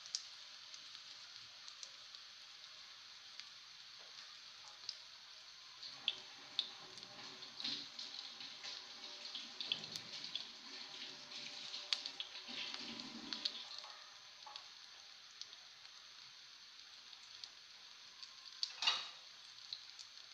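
A besan-coated bread slice (bread pakora) sizzling in shallow oil in a frying pan: a steady, fairly faint hiss with scattered small crackles and pops, and a brief louder noise near the end.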